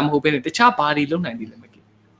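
Only speech: a man talking, trailing off into a short pause near the end.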